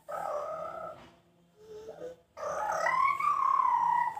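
A dog howling: a short howl at the start, then a longer one about two and a half seconds in that rises and slowly falls away.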